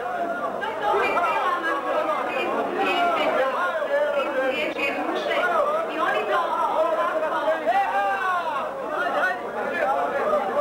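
A crowd of men talking over one another around banquet tables: dense, steady chatter with no single voice standing out.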